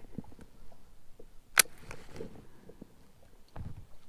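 Small handling sounds of a baitcasting rod and reel: a few soft clicks and knocks, with one sharp click about one and a half seconds in.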